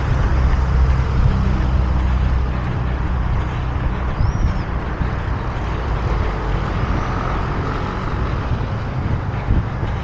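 Road traffic on a multi-lane city street: cars and a van driving past close by, with a steady engine hum that is strongest in the first half. A brief high chirp sounds about four seconds in.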